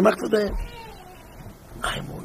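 A man talking in Yiddish-accented speech, breaking off for about a second in the middle before starting again near the end.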